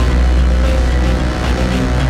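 Dramatic background score with a sustained deep bass drone under layered held tones.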